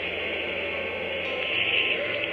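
Steady, hissing roar of the Saturn V rocket's engines at liftoff, heard through an old, thin-sounding archival recording, with music of low sustained notes underneath.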